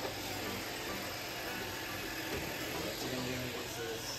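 iRobot Roomba robot vacuum running on a hardwood floor, a steady hum and whir from its motors and brushes.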